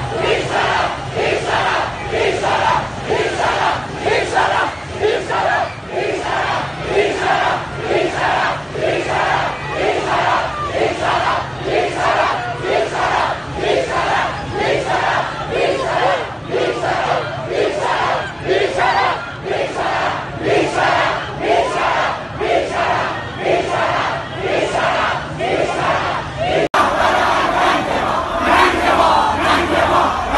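A large crowd of protesters chanting political slogans in unison, in a steady rhythm. About 27 seconds in there is a momentary break, and a louder chanting crowd follows.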